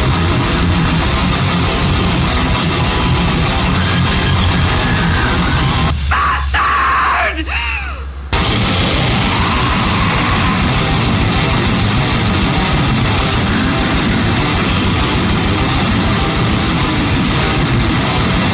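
Death metal/grindcore band recording: distorted electric guitars, bass and drums playing at full tilt. About six seconds in the band drops out for about two seconds, leaving a low drone and a few sliding high tones, then comes back in at full volume.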